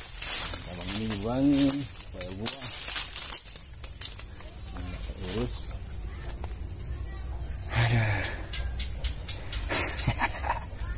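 Short wordless bursts of a man's voice, with scattered clicks and rustling between them, over a steady high hiss.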